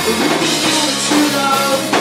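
Live rock band playing loudly, with electric guitars, bass guitar and drum kit.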